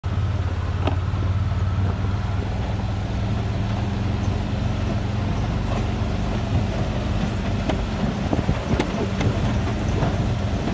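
Side-by-side UTV engine running steadily as it drives slowly over a rocky dirt track, with scattered knocks and rattles from the rough ground that come more often in the second half.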